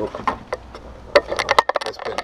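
A removed plastic Toyota Tacoma glove box being handled, with a quick run of sharp plastic clicks and knocks in the second half as its latch and door are worked open one-handed.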